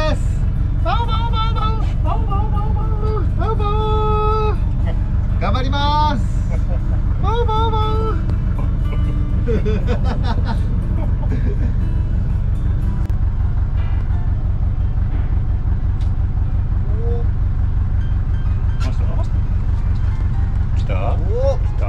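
A boat's engine running steadily, a continuous low hum.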